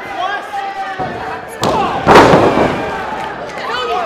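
Two hits in a wrestling ring about half a second apart, the second much louder and echoing briefly in the hall, over shouting voices.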